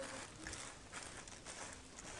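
Faint rustling and crinkling of plastic as a bag-covered hand rubs chilli seeds coated with Trichoderma powder across a plastic sheet, in soft strokes about twice a second.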